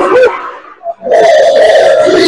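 A loud, drawn-out shout that wavers in pitch and trails off in the first moment, then after a short lull another loud, held shout about a second in.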